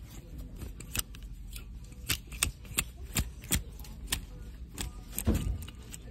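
Clothes hangers clicking and scraping along a metal rack rail as shirts are pushed aside one at a time: irregular sharp clicks, with the loudest cluster near the end.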